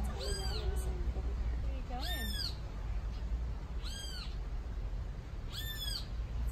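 An animal calling over and over: a short cry that rises and then falls, repeated about every two seconds, over a steady low rumble.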